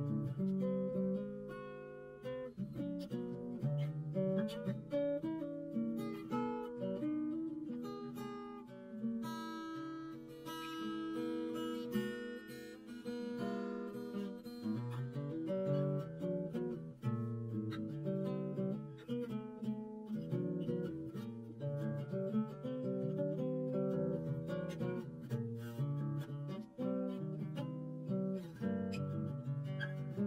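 Background music: acoustic guitar playing, picked notes and strummed chords without a break.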